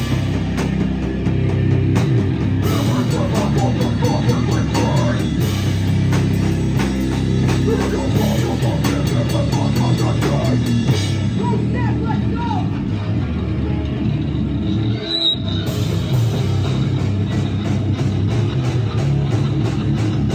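Live heavy rock band playing loud: distorted electric guitar and drum kit with a vocalist singing into a microphone. The music breaks off for a moment about fifteen seconds in, then the band comes back in.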